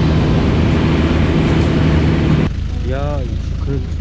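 Vehicle driving along a dirt track: a steady engine hum under loud road and wind noise. It drops off abruptly about two and a half seconds in, leaving a quieter engine hum.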